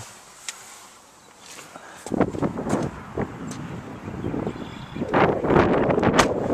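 A quiet couple of seconds, then wind buffeting the microphone from about two seconds in, an uneven low rumble and rustle that grows louder near the end.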